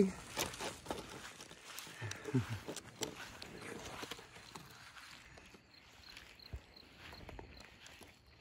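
Footsteps through grass with a phone rustling and knocking as it is carried, growing quieter in the second half. A brief low voice-like sound about two seconds in.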